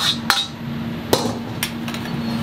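Sharp metal-on-metal knocks as a wok is emptied into a stainless steel pot: two quick clanks at the start, then three more in the second half. A steady low hum runs underneath.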